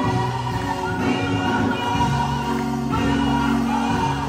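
Gospel worship song sung by a group of voices, with instrumental backing holding low notes that change about once a second.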